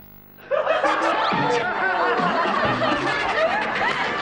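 Several people laughing together, breaking out about half a second in after a brief hush and carrying on to the end.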